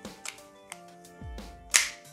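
The standard plastic cylinder of an Umarex HDR 50 CO2 revolver being put back into its frame: a few light clicks, then one sharp snap near the end as it seats. Soft background music plays underneath.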